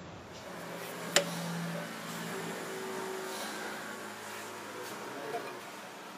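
Workshop background with faint, indistinct voices and a low steady hum, broken by one sharp click about a second in and a smaller click near the end.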